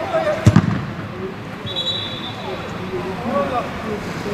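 A football thudding once about half a second in, with faint shouts of players on the pitch around it.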